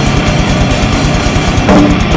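Drum kit played loud at a fast grindcore tempo: rapid kick and snare strokes packed closely under a continuous wash of cymbals.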